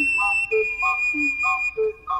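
Instrumental music: an ocarina holds a long high note that steps down slightly about half a second in, over a bass line that alternates with short repeated chords in a steady rhythm.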